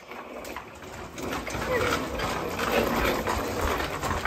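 Plastic wheels of a child's baby walker rolling across a hard floor, a steady rumbling noise that grows louder about a second in as the walker picks up speed.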